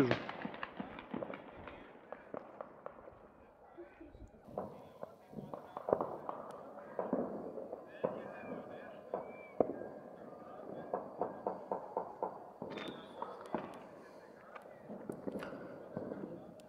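Distant fireworks and firecrackers going off across a town, a string of irregular bangs and pops from many directions, with celebratory gunshots from the hills among them.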